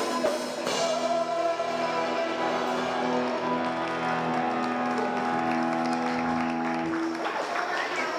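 Live band music with electric guitars, holding long sustained chords.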